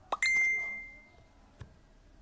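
A single bright notification ding a moment in, ringing out and fading over about a second, preceded by a short click; another short click comes near the end.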